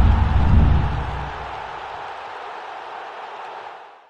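Logo sound effect for the end card: a sudden deep boom with a rushing wash of noise. The boom dies away after about a second and a half, and the noise fades slowly to nothing by the end.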